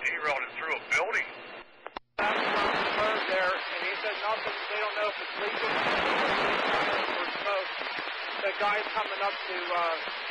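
Railroad scanner radio: a short voice transmission, a sudden cut-out about two seconds in, then more radio speech under a steady static hiss.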